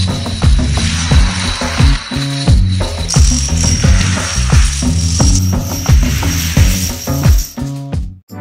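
Plastic dominoes toppling in a long chain reaction, a dense rapid clatter of small clicks, under background music with a steady beat.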